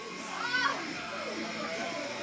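Low murmur of onlookers' voices, with one brief high-pitched voice calling out about half a second in.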